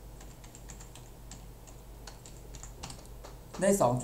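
A quick run of keystrokes on a computer keyboard, typing numbers into a calculator, with a brief word of speech near the end.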